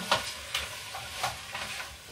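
Stoneware bowls being handled: a few faint, light knocks and scrapes of ceramic against a steady background hiss.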